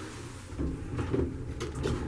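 Vintage R&O hydraulic elevator coming to a stop at a landing with its doors starting to open: a low rumble that begins about half a second in, with a couple of light clunks.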